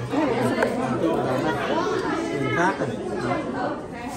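Several people talking at once: overlapping chatter from a small group in a busy indoor space.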